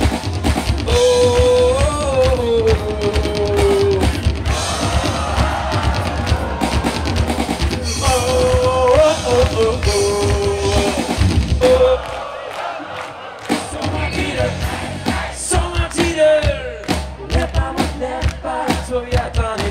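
A live rock band, with drums, guitar and a lead vocal, playing through a PA, with the crowd audible under it. The drums and bass drop out for a couple of seconds about twelve seconds in, then the band picks up again.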